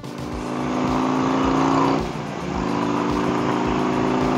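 Harley-Davidson Road King V-twin accelerating through Vance & Hines slip-on mufflers, with a brief dip in the engine note about two seconds in before it pulls again, over wind noise. The bike runs a Screaming Eagle tuner and air intake, which give it strong pull.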